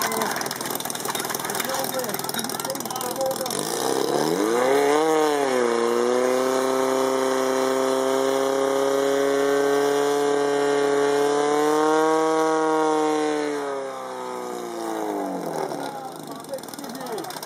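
Portable fire pump engine revved hard about four seconds in and held at a high, steady pitch while it drives water through the hoses to the targets. It rises slightly, then is throttled back and winds down near the end.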